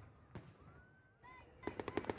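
Fireworks: a single bang, then a whistle that rises in pitch and levels off, then a quick run of crackling pops near the end.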